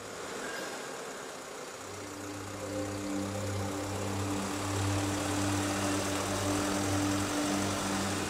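Mercedes-Benz Vito ambulance van's engine running as it pulls away, with a low, steady musical drone underneath.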